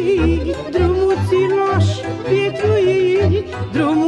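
Romanian lăutărească folk music: a wavering, ornamented melody line over an even, pulsing bass beat.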